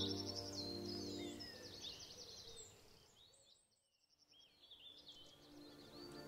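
Background music with birdsong chirping above it. It fades out to a brief near silence midway, then starts to come back near the end.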